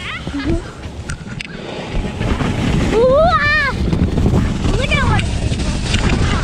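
Snow tube sliding down a packed snow run: a rough rumble of the tube on the snow, with wind on the action camera's microphone, builds from about two seconds in. A rider lets out a long whoop that rises and falls in pitch in the middle, and a shorter one near the end.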